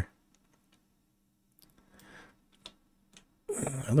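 A few faint, scattered clicks from working a computer mouse and keys, over a low steady hum. A man's voice begins near the end.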